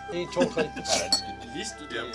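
Spoons clinking against cups and bowls, a few sharp clinks near the middle, amid overlapping chatter and background music.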